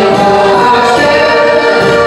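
Live folk dance music from a small village band led by an accordion, with singing over it.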